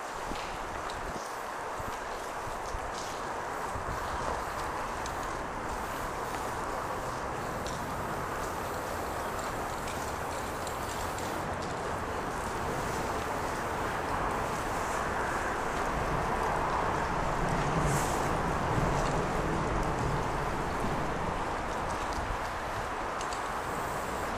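Steady outdoor background noise of wind and distant traffic, with a few faint short hisses from a spray-paint can.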